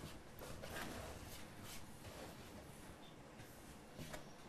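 Faint, intermittent soft rustling of hands loosening and spreading freshly hand-cut strands of fini fini egg pasta.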